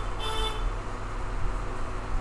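Steady background noise with a low electrical hum, and a short horn-like toot just after the start.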